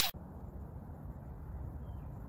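Faint, steady low rumble of outdoor background noise, with nothing high-pitched in it; a swoosh sound effect cuts off right at the start.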